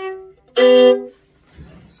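Acoustic violin bowed: a held note dies away, then one short loud bowed chord about half a second in, ringing off about a second in. The player calls the instrument out of tune.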